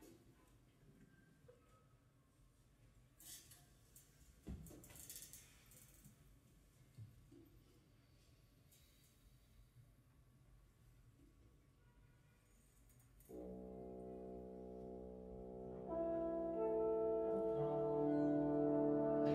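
Near quiet with a few faint knocks and rustles, then about 13 seconds in a big band's horn section enters on a long held chord. It grows louder as more horns join a few seconds later.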